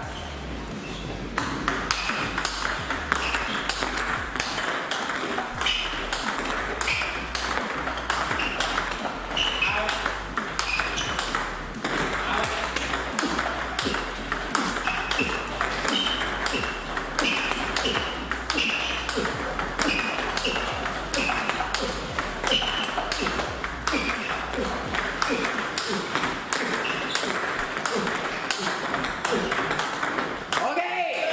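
Table tennis multiball drill: a fast, steady stream of plastic balls clicking on the table and off the rackets as a feeder sends ball after ball and the receiver drives them back, several hits a second.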